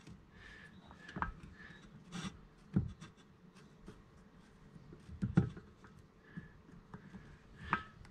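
Handling noise of a piston ring compressor being fitted and adjusted around the piston of a chainsaw engine. It gives light scattered clicks and taps with some rubbing, the sharpest about halfway through.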